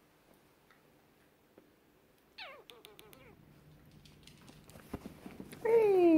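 Manchester terrier puppy giving a short, high whine that falls steeply in pitch, about two and a half seconds in, with a few light clicks around it. Near the end a much louder high, falling call begins.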